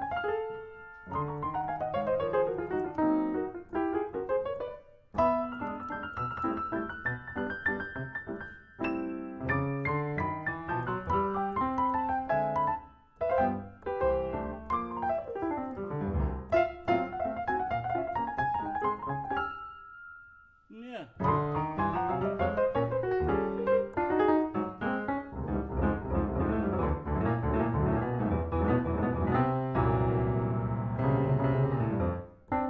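Solo piano on a Steinway grand: quick runs up and down the keyboard broken by short pauses, a single high note held around twenty seconds in, then denser, louder chords with a heavy bass near the end.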